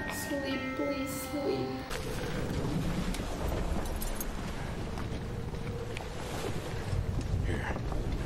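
Film soundtrack: orchestral music with held notes that ends about two seconds in, giving way to a low, rumbling background ambience.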